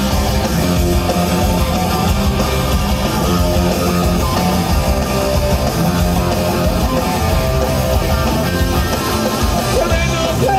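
Live rock band playing loud and steady: distorted electric guitars, bass guitar and drums.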